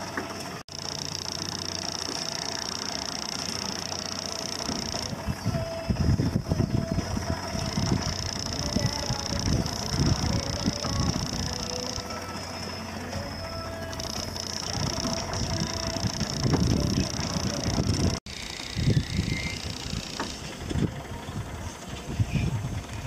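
A small amusement-park ride car rumbling and rattling irregularly as it runs along its elevated rail. A steady high-pitched hiss cuts in and out several times.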